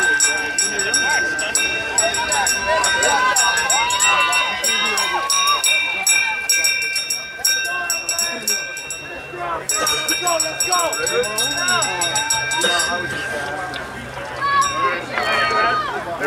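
People's voices talking and calling out, with a steady high-pitched tone running underneath.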